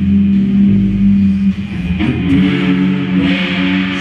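Live band music led by electric guitar with bass underneath, holding a low sustained chord and moving to a new chord about halfway through.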